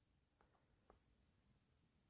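Near silence: the sound drops to nothing between spoken lines.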